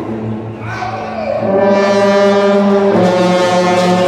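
A youth marching band's brass section (trumpets, trombones and sousaphones) playing long held chords over a low brass bass line. The chord swells louder about a second and a half in and moves to a new chord about three seconds in.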